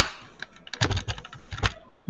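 Computer keyboard keystrokes: an irregular run of sharp key clicks, the loudest at the start, then a cluster about a second in and another near the end.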